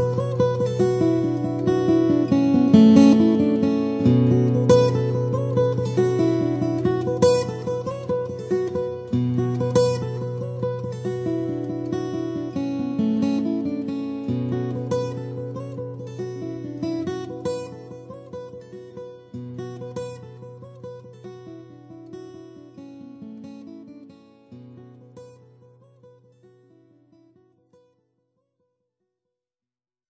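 Solo guitar playing picked notes over long held bass notes, growing steadily quieter and dying away to silence near the end.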